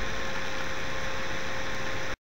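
Steady background hiss of the voice recording with a faint, steady electrical whine running under it.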